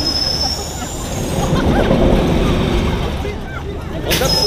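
Wind rumbling on the microphone of a camera mounted on an amusement tower ride, over a steady noise with faint voices in it.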